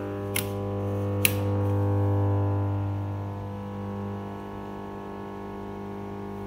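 Grundig valve radio giving a steady low hum with overtones from its speaker, swelling about two seconds in and then easing as it is tuned. Two sharp clicks of its piano-key band buttons come in the first second or so.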